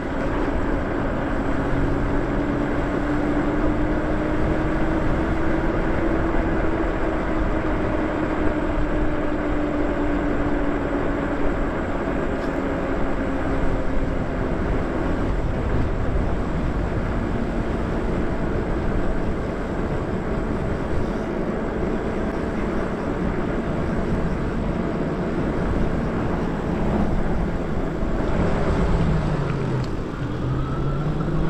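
Lyric Graffiti e-bike riding along, with steady wind rush on the microphone and the electric motor's thin whine over it. The whine's pitch drifts slowly with road speed, then dips and climbs again near the end as the bike slows and picks up.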